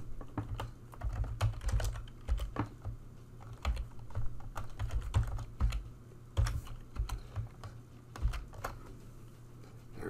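Typing on a computer keyboard: a run of irregular keystrokes, thinning out to a few scattered key presses in the last few seconds.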